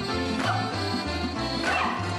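Lively folk dance music with a steady, even bass beat. Two short, sliding high vocal cries ring out over it, about half a second in and again near the end.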